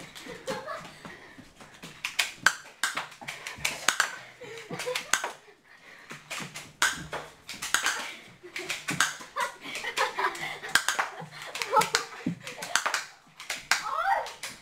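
Cheap spring-powered airsoft pistols firing with sharp snapping clicks, over and over at irregular intervals, with plastic pellets knocking against surfaces and quick footsteps on a hard floor.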